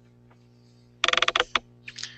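A short burst of rapid clicking about a second in, then a few softer clicks, over a steady low electrical hum on the audio line.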